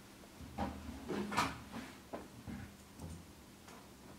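Quiet handling noises at a studio desk: a string of soft knocks and clicks, about eight in four seconds, the loudest a little over a second in, over a faint steady hum.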